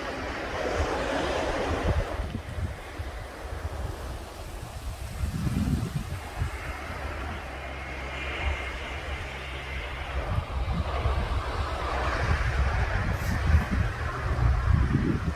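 Sea waves washing and breaking over rocks, with wind buffeting the microphone as a low rumble.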